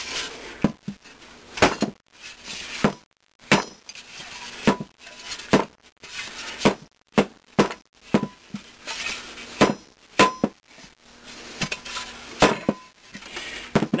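Irregular metal-on-metal knocks and clinks, somewhat more than one a second, several ringing briefly: a rusted magnet ring being worked loose from an aluminium Maytag Model 92 flywheel magneto housing.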